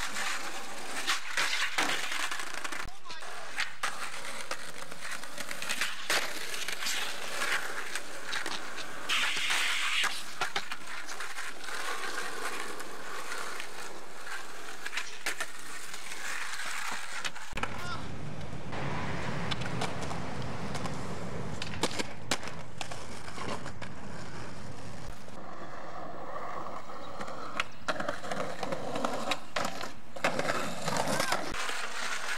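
Skateboard wheels rolling on concrete, broken by repeated sharp clacks of the board popping and landing. About halfway through, the steady rolling noise turns deeper and fuller.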